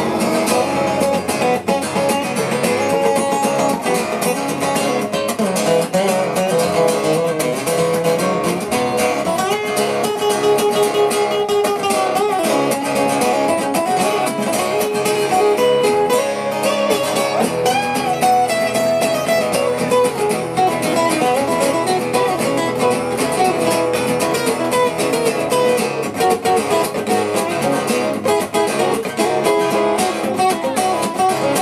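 Two steel-string acoustic guitars playing live, strummed chords running on without a break.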